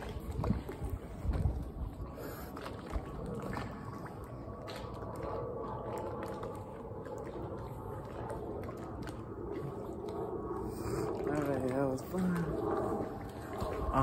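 Water sloshing and splashing, with a few low thumps in the first two seconds. Near the end a person's voice makes a wavering, wobbling vocal sound.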